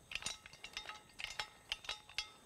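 Metal parts of a folding shovel clicking and clinking lightly as it is handled and turned over, a quick string of small clicks, some with a short ring.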